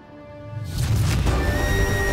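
Dramatic background score swelling in from near quiet: a deep low rumble builds about half a second in, and a single high note is held over it near the end.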